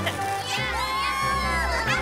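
Several cartoon children's voices whooping and cheering together, with many sliding pitches starting about half a second in, over background music.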